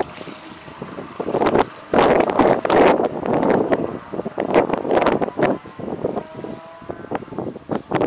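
Wind buffeting the microphone in irregular gusts that swell and drop every second or so.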